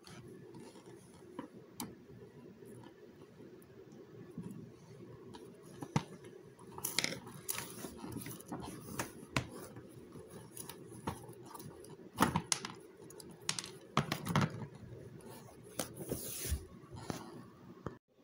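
Plastic side trim cover of a car seat being unscrewed with a Phillips screwdriver and worked loose by hand. It is heard as scattered clicks and knocks with a few louder scrapes of plastic over a steady low background.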